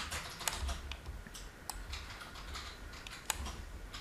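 Faint, scattered clicks of a computer mouse selecting text, a few sharp ones spread across the few seconds, over a low steady hum.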